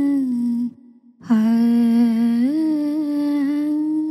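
A woman's voice singing wordless, long held notes: the first note ends a little under a second in, and after a short break a new low note begins, steps up in pitch about halfway through, and is held.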